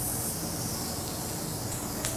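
Beef steak sizzling on a hot teppanyaki iron griddle just after being set down, a steady high hiss that eases off toward the end.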